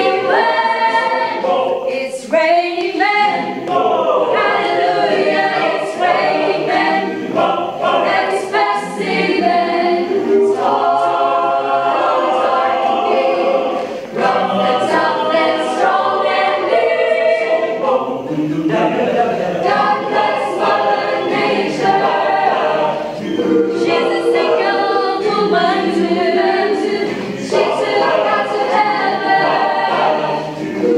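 Mixed choir of men and women singing a cappella in several parts, without accompaniment, with brief breaths between phrases.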